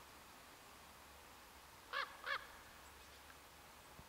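A large black crow-family bird flying overhead gives two short calls, each rising and falling in pitch, about a third of a second apart and about two seconds in.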